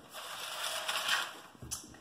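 A flat metal cookie sheet scraping as it slides across a stone countertop, the sound fading out, then a short soft knock near the end.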